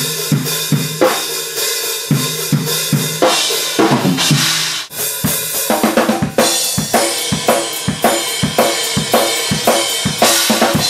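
Drum kit played through a recording take: kick drum, snare and cymbals in a dense run of hits, with a brief drop about five seconds in.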